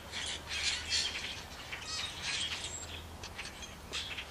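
A large flock of blackbirds calling together: many short, overlapping squawks and chirps.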